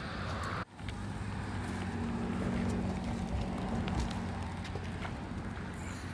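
Stroller wheels rolling over a concrete path, a steady low rumble that starts after a brief break about half a second in.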